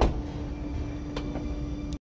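Power-operated trunk lid of a BMW M850i Gran Coupe shutting with a sharp thump at the start. A steady low hum from the trunk mechanism follows, with a small click about a second in, and the hum stops suddenly near the end.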